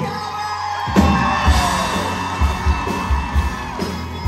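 Live rock band of electric guitars, bass and drum kit crashing into a song about a second in and carrying on with a heavy drum beat. An audience yells and whoops over it.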